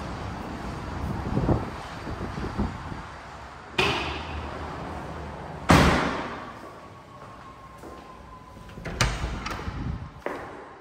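Sliding glass balcony door knocking about four seconds in, then thudding shut more heavily about six seconds in, the loudest sound. Near the end, a door handle and latch click as an interior door is opened.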